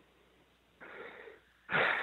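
A man's breathing in a pause in conversation: a soft breath about a second in, then a louder one near the end.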